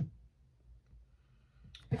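Quiet room tone with a steady low hum, opening with one short click and a faint tick about midway; a woman's voice begins right at the end.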